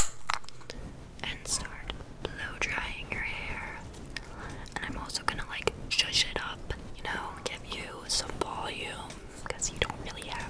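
Soft whispering close to the microphone, with a sharp click right at the start and small scattered clicks and taps throughout.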